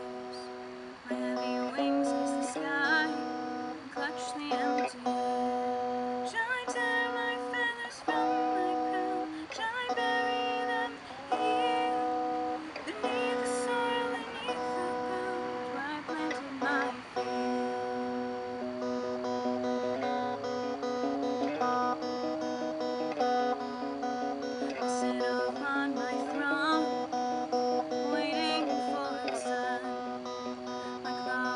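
Electric guitar played through a small portable amplifier, picking a song's chords that change about every second.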